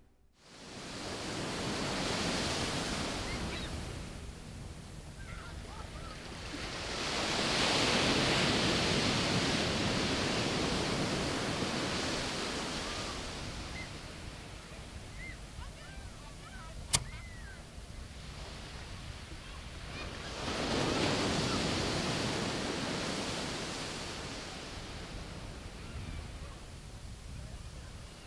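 Surf breaking on a sandy beach: three long swells of rushing wash, each building and fading over several seconds. Faint chirps come between the swells, and a single sharp click sounds about two-thirds of the way through.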